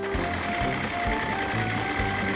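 Cartoon sound effect of an old delivery truck's engine running with a clattering mechanical rattle, over background music with sustained notes.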